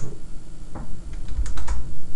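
A few separate key presses on a computer keyboard, then a quick run of three clicks about one and a half seconds in.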